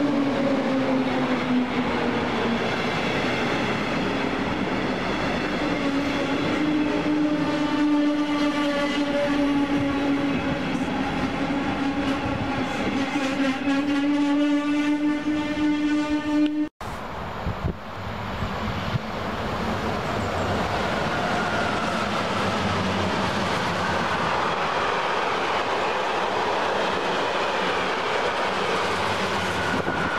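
DB class 143 electric locomotive and its double-deck coaches passing, with a strong steady electric whine that drops in pitch as the locomotive goes by and then slowly rises. After a sudden cut a little past halfway, a long freight train of car-carrier and open wagons rolls past with a steady rumble and wheel clatter.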